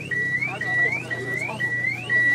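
Car alarm siren: a high steady tone that sweeps upward, repeating about twice a second.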